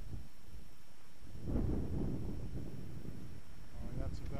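Wind buffeting the microphone: a low, rumbling noise that swells about a second and a half in and eases off again.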